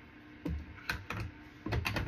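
Small makeup containers and tools being handled and set down on a counter: irregular light clicks and knocks, busier near the end.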